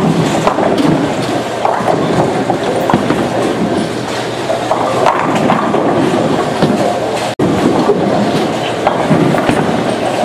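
Bowling alley din: balls rolling and rumbling down the lanes and pins clattering on many lanes at once, a loud continuous rumble dotted with knocks. It cuts out for an instant about seven seconds in.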